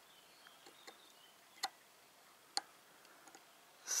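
Faint clicks from an air rifle scope's windage adjustment being turned, two of them sharper, about a second apart, as the crosshair is brought onto the point of impact while the scope is zeroed.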